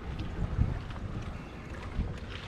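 Wind buffeting the microphone as a low rumble, with a short bump about half a second in and another near the end.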